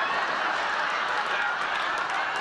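Studio audience laughing, a dense steady swell of crowd laughter that builds just before and holds level throughout.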